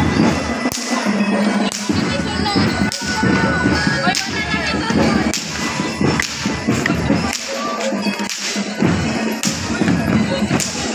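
Sharp cracks, about one a second, over a dense background of parade and crowd noise.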